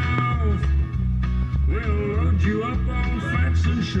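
Country-rock jingle music with guitar, a steady pulsing bass beat and a sung melody line.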